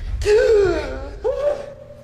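Two wordless human vocal sounds. The first falls in pitch; the second rises and then holds one steady note.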